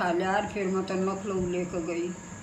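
A person talking, with a faint steady high-pitched whine underneath that continues after the voice stops.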